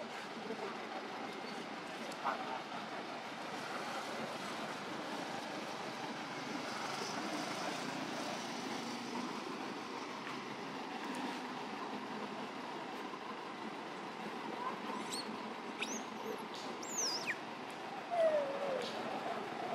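Steady outdoor background noise, with a few short, high-pitched calls that slide down in pitch near the end.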